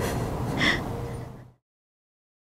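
A person's sharp intake of breath while crying, about two-thirds of a second in, over a steady low background hum; the sound then cuts off to dead silence about a second and a half in.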